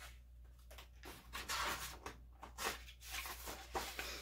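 Soft rustling of paper as a picture book's page is turned, in several short brushes.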